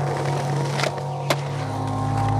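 Skateboard wheels rolling over brick paving, a rough rattling noise with two sharp clacks about half a second apart near the middle. Background music plays underneath.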